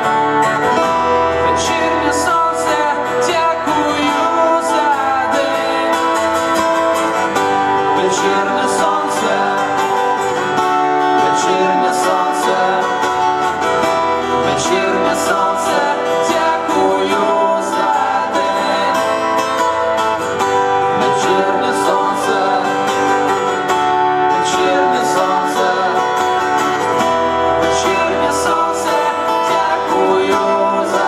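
Two acoustic guitars strummed in a live song, with a man singing over them.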